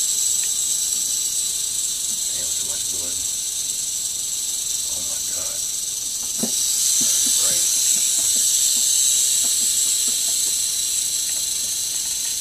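Eastern diamondback rattlesnake rattling its tail: a continuous high buzz that grows louder about six and a half seconds in.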